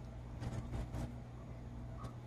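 Faint handling noise, a few soft rustles and light ticks as a potted philodendron's leaves and metal pot are moved in the hands, over a low steady hum.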